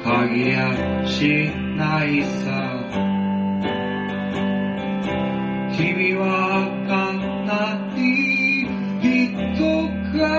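A song played on acoustic guitar, plucked and strummed, with a singing voice over it.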